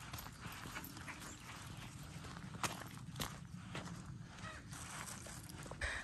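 Footsteps on a dirt and gravel trail, irregular steps, over a low steady rumble of wind or handling on the microphone.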